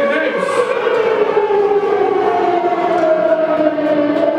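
A siren-like wail with several tones together, sliding slowly down in pitch.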